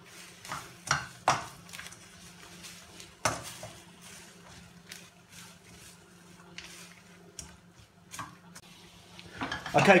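A plastic slotted spatula stirring and scraping noodles in a stainless steel wok, with irregular clacks and taps of the spatula against the pan over faint sizzling. A low steady hum runs underneath.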